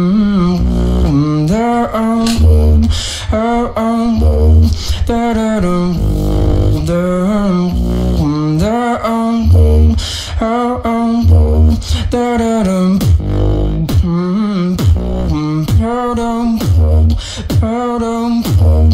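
Beatboxing into a microphone: deep kick-drum and sharp snare-like clicks in a steady groove, under a pitched vocal line that glides up and down.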